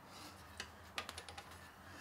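Light metal clicks and taps from a 5-inch Vevor milling vise being swung round on a milling machine table: one click about half a second in, then a quick run of five or six near the middle.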